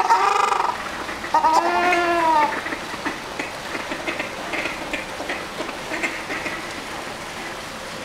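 Ruddy shelducks calling with loud, nasal, goose-like honks: one call ends in the first second and a second, about a second long, comes about a second and a half in. After that only faint background sounds remain.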